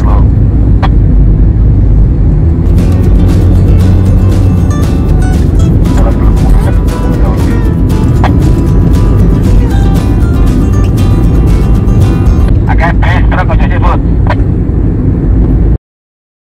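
Loud, steady low rumble of a car driving on the road, heard from inside the cabin, with music playing over it from about three seconds in. The sound cuts off abruptly just before the end.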